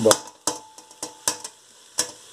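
A long metal rasp grater grating garlic over a stainless steel pot: about five short, sharp scraping clicks, unevenly spaced about half a second apart.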